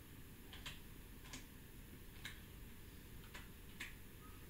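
Computer keyboard typed on slowly: a handful of faint, separate key clicks at uneven intervals, about one every half second to a second.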